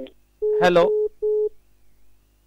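A telephone line tone coming over the phone line: a steady mid-pitched beep heard twice in quick succession, the first longer than the second, with a man saying "hello" over the first beep.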